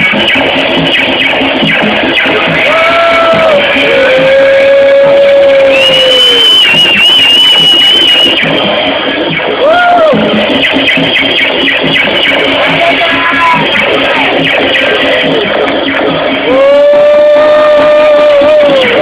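Loud experimental noise music from circuit-bent electronic toys: a dense, distorted wash with warbling pitched tones that bend, slide and break off. It gets louder about three-quarters of the way through.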